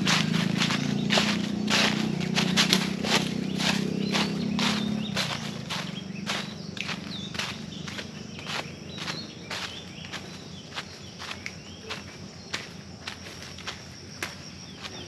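Footsteps on dry leaf litter at a walking pace, about two steps a second. A low steady hum runs under the first five seconds, then fades.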